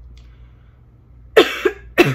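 A woman coughing into her fist: two sharp coughs about a second and a half in, with a third starting right at the end. The coughing comes from her being sick.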